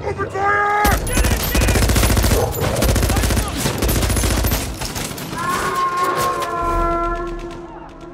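A brief shout, then sustained rapid automatic-rifle fire from several guns for about four seconds over a low rumble. It thins out as a held high tone rises near the end.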